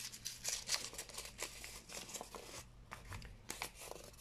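A strip of kraft paper crumpled and twisted by hand, giving quiet, irregular crackling to give it a creased, crinkled texture.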